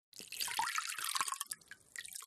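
Fresh water poured from a jug over a bare foot, splashing into a basin of water as the feet are rinsed after a salt-water foot soak. The pouring stops after about a second and a half, leaving a few drips.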